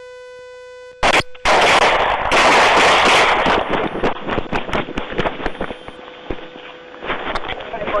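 Police handgun fire picked up by a dashcam's microphone: a long string of rapid shots over several seconds, after a steady electronic tone in the first second.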